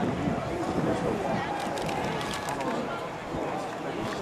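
Indistinct talking among a group gathered close together, with no words clear enough to make out.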